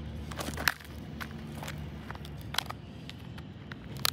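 A hand tool prying and scraping at a smartphone whose back has melted and fused shut in a battery fire, giving a sharp crack under a second in and scattered clicks after, over a low steady rumble.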